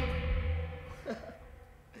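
The final chord of a live emo/punk rock band ringing out and dying away after the loud ending, low bass and guitar notes fading steadily, with a faint downward sliding note about a second in.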